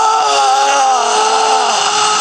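A film monster's single long, loud wailing cry, held at one pitch with a slight waver.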